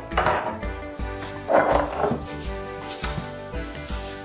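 Background music, with two short rustling, scratchy noises about a second and a half apart as salt is sprinkled by hand into a glass blender jar.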